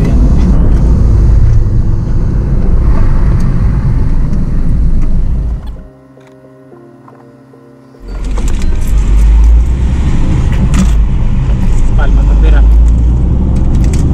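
Car interior noise while driving: a loud, steady low rumble of road and engine noise. About six seconds in it drops away suddenly to a much quieter steady hum for about two seconds, then comes back just as loud.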